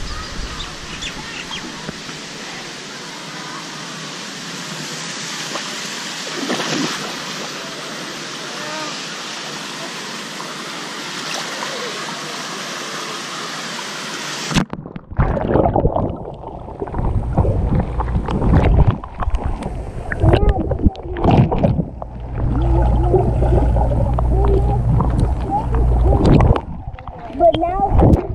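A GoPro rides down a water slide with a steady rush of water and air noise. About halfway through it plunges into the pool and the sound cuts abruptly to a muffled underwater rumble with bubbling and gurgling surges.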